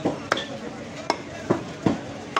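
A butcher's cleaver chopping beef on a wooden log chopping block: a steady run of sharp chops, about two a second.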